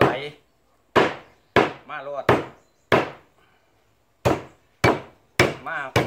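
Large kitchen knife chopping eel on a round wooden chopping block: about eight hard chops, one every half-second to second, with a pause of about a second in the middle.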